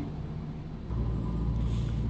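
A low, steady rumble that grows louder about a second in and then holds steady.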